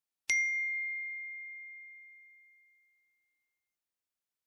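A single bright bell-like ding, struck once just after the start and ringing on one clear high tone that fades away over about three seconds: the sound of a logo sting.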